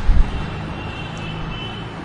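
Steady background noise in a pause between speech: an even hiss with a low rumble underneath, swelling briefly at the start.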